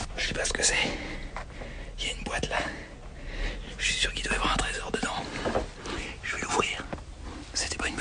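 A man whispering in short bursts with pauses; the words are not made out.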